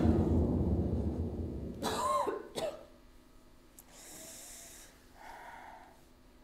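Music fading away over the first couple of seconds, then a person coughing and gasping, followed by two quieter breaths near the end.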